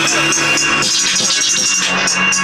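Music with a steady beat and rapid high percussion.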